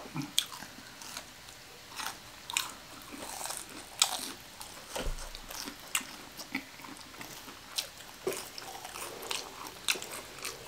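Biting and chewing crunchy fried fast food, with scattered crunches and wet mouth clicks.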